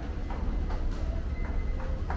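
Footsteps on a hard floor, a little more than two a second, over a steady low rumble.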